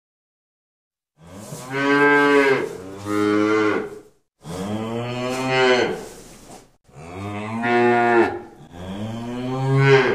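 A cow mooing: five long, loud moos in quick succession, starting about a second in, each call falling away at its end.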